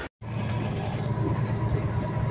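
Cab of a semi truck driving at highway speed: a steady low engine and road rumble, starting just after a brief gap near the start.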